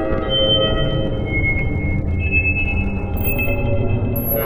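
Experimental electronic ambient music made by resonance synthesis: metallic resonator tones, driven by slowed-down computer sound-card noise, held and stepping to new pitches over a dense low rumble.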